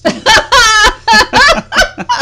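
A person laughing loudly in several quick, high-pitched bursts.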